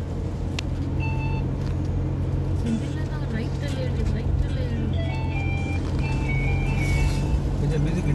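Steady low rumble of a car being driven, heard from inside the cabin, with music and voices playing over it.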